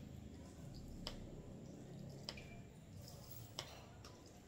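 Metal coconut scraper raking through firm set gulaman in a plastic tub: three faint scraping strokes, each ending in a light click, about a second and a quarter apart.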